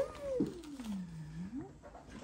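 One drawn-out wordless vocal sound. The voice jumps up at the start, slides slowly down to a low pitch, and turns up again near the end.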